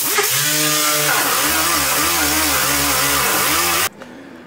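Air-powered die grinder with a wire wheel scrubbing spatter paint off a car's sheet-metal trunk floor: it spins up with a rising whine, its pitch wavering as it is pressed into the metal, and cuts off suddenly near the end.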